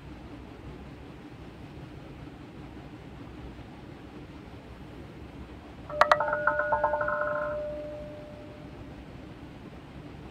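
Audio from an online roulette game: a sudden click, then a rapid, ringing rattle of about twelve pulses a second that lasts about a second and a half and fades to a single tone, over a steady low hiss.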